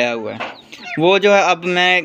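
Rooster crowing: one call trails off with a falling pitch in the first half-second, then another begins about a second in, rising sharply and holding one steady pitch.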